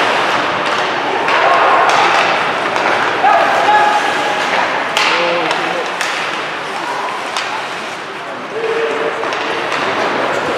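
Ice hockey play in a rink: voices shouting and calling across the ice, with a few sharp knocks of sticks and puck, the clearest about halfway through and two more over the next couple of seconds.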